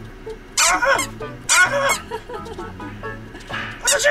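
Squeaky dog toy squeezed by hand: two wavering squeaks about a second apart, and a third near the end.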